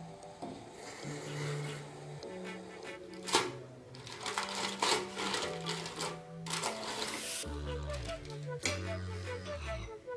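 Background music with a steady bass line. Over it, a steel steamer lid clinks sharply once about three seconds in, then aluminium foil crinkles as it is peeled off the steaming bowl.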